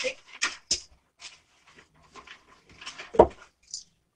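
Hands handling a packet of elastic: scattered light rustles and clicks, with a single dull knock about three seconds in.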